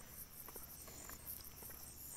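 Faint night chorus of crickets: steady, high-pitched, evenly pulsing chirps.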